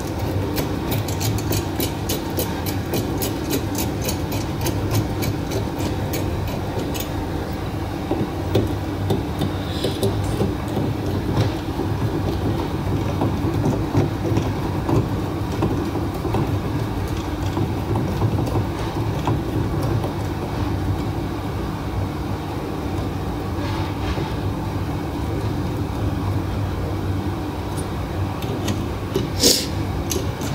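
A steady low mechanical drone throughout. Over it, rapid light clicking (about four a second) runs for the first several seconds, and a few sharp clicks come near the end as the plastic headlight housing and bulb cover are handled.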